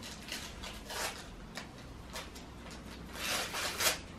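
Wrapping paper being torn off a present in a series of short rips, with a longer, louder stretch of tearing near the end.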